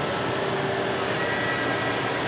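Leblond heavy-duty engine lathe's power rapid traverse running, driving the carriage along the bed ways with a steady mechanical whir; a faint steady whine comes in about halfway through. It runs nice and smooth.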